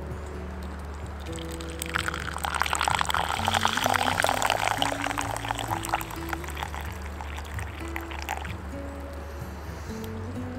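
Coffee poured from a stovetop moka pot into a wooden cup: a splashy pour that starts about two seconds in and runs for about six seconds, over background music.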